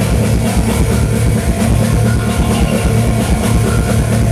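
Rock band playing loudly: drum kit with steady regular hits over electric guitar and bass.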